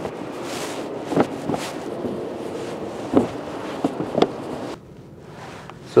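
Outdoor wind noise on the microphone with a handful of short knocks and clunks from the plastic front-trunk cover being handled. The wind hiss drops away about three-quarters of the way in, leaving a quieter background.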